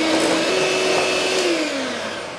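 Electric hand mixer running, its beaters whipping plant-based shortening in a glass bowl. The motor's whine holds steady, then drops in pitch and fades near the end as it winds down.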